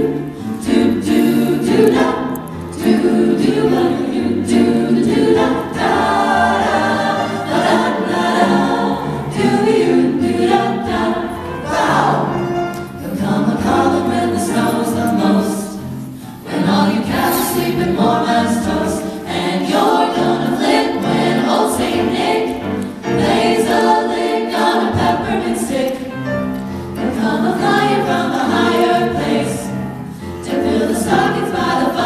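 Vocal jazz ensemble of mixed male and female voices singing a jazzy Christmas song together into handheld microphones.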